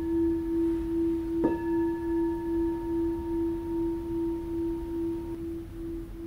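A meditation singing bowl ringing. It is struck again about one and a half seconds in, and its low tone rings on with a slow, wavering pulse while the higher overtones die away before the end.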